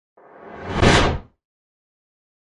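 A whoosh sound effect that swells louder for about a second and then cuts off quickly.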